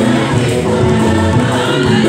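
Church choir singing a communion hymn, many voices together, steady and continuous.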